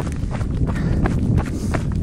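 A runner's footsteps, a regular patter of steps a few times a second, over a steady low rumble.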